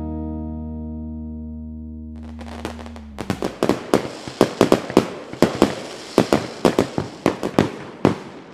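The song's final held chord fades out; then, from about two to three seconds in, fireworks go off: a quick run of sharp bangs, several a second, over a crackling hiss.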